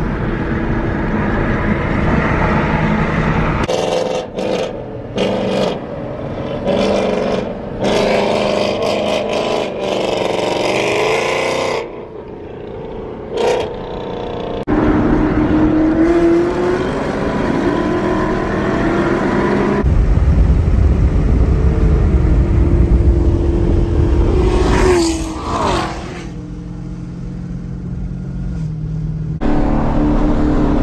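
Camaro ZL1's V8 engine heard from inside the cabin at highway speed over road noise, its note rising and falling with the throttle. The sound changes abruptly several times where the footage is cut.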